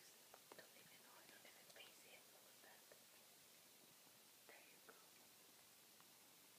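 Near silence with faint, brief whispering in the first two seconds and again briefly near the five-second mark.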